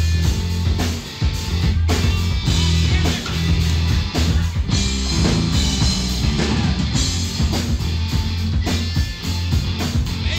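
Live rock band playing a funky, upbeat song: electric guitar, bass guitar and drum kit, with a heavy, rhythmically pulsing bass line and a steady drum beat.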